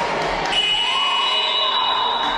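A high-pitched steady signal tone starts about half a second in and is held, stepping higher about a second in. It marks the end of a team time-out, as the players break from their huddle and return to the court. Hall chatter runs underneath.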